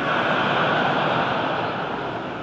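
Large audience laughing at a joke: the laughter breaks out suddenly and then slowly dies away.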